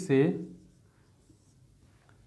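Faint strokes of a marker pen on a whiteboard as a number is written and underlined, after a man's short spoken word.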